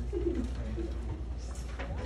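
Two short, low cooing hoots in the first second, the first falling in pitch, over a steady low room hum.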